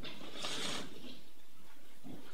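A woman crying into a tissue, with one sharp, hissy sniff about half a second in, over a steady room hiss.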